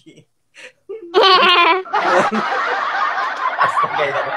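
Two people burst into laughter. A loud, high-pitched shriek of a laugh comes about a second in, then continuous hearty laughing.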